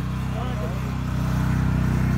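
Small engines of walk-behind rotary tillers (power tillers) running steadily while working soil: a continuous low engine hum with a fast firing pulse, getting a little louder in the second half.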